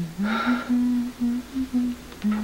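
A woman humming a slow tune, a string of held low notes stepping up and down in pitch.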